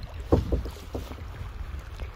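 Kayak being turned with a one-handed paddle: a few quick paddle splashes and knocks about half a second in, over a low rumble of wind on the microphone.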